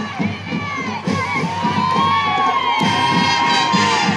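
Crowd cheering and shouting, many voices rising and falling with long drawn-out calls, over the steady beat of a marching band's drums.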